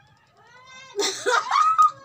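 A person's high-pitched shriek, rising in about half a second in and breaking into a loud, wavering squeal in the second half.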